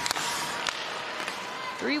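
Ice hockey game sound: steady arena crowd noise with a couple of sharp clicks of stick on puck, the first right at the start and the second under a second in. A commentator's voice comes in near the end.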